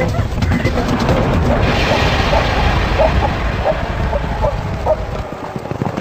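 A lioness bringing down a zebra foal: a dense low rumbling scuffle in the dust, with a series of short animal cries through the middle. The low rumble falls away near the end.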